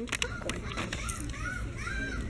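Children's voices in the background, a few high rising-and-falling calls from about a second in, over a steady low rumble and a few sharp clicks of the camera being handled.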